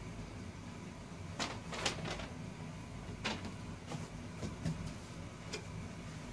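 Hands handling parts in a foam packing insert, with several short, scattered soft knocks and rustles as pieces are moved about.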